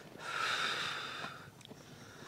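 A long, breathy exhale lasting about a second and a half, without voice.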